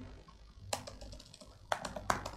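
Computer keyboard typing: a few quick keystrokes in two short clusters, one under a second in and another near the end, faint.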